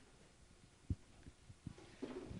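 Mostly quiet room with a few dull low knocks, the sharpest about a second in. They are handling bumps on a handheld microphone while a ticket is drawn from a clear plastic box.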